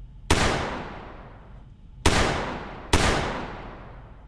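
Three handgun shots, the first just after the start, the second about two seconds in and the third a second later, each followed by a long echoing tail.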